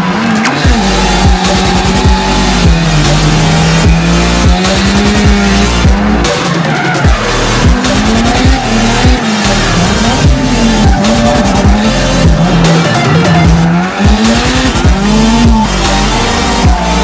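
Mazda RX-7 drift car engine revving up and down again and again as the car slides, with tyres squealing, mixed under electronic background music.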